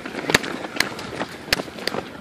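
Footfalls of runners' shoes on concrete pavement as they pass close by: a sharp step about every half second over a faint, steady outdoor hiss.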